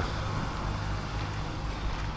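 Diesel truck engine idling with a steady low hum.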